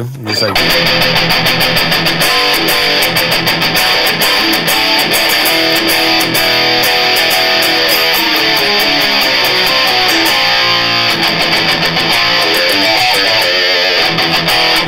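Fernandes Revolver Elite electric guitar played through an amp: fast picked riffs and lead runs, many notes a second without a break. A short laugh comes about two seconds in.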